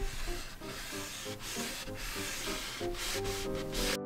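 Tissue rubbing oil-paint stain into a small wooden trim strip: close, scratchy rubbing in irregular strokes that stops abruptly at the end, with soft background music underneath.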